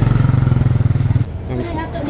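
A small engine running steadily at low speed, with a fast even pulse, that stops abruptly a little past halfway.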